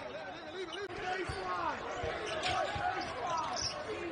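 Basketball dribbled on a hardwood arena court, several bounces, under arena voices.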